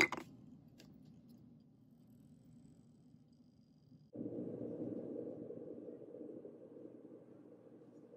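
A sandstone rock dropped into a glass of vinegar lands with one short, sharp sound right at the start, then faint room tone. About four seconds in, a low steady rushing noise comes in suddenly and fades slowly.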